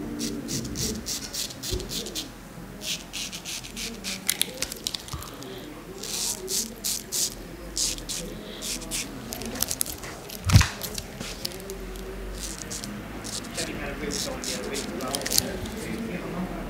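Straight razor shaving stubble through shaving lather: runs of short, crisp scraping strokes with brief pauses between them. A single thump sounds about ten and a half seconds in.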